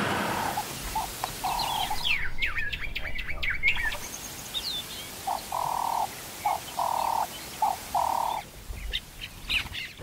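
Wild birds calling: a repeated, level hooting note of one pitch, sounding in a group near the start and again in a series from about halfway, with quick high chirps and whistles in between, over a steady faint hiss.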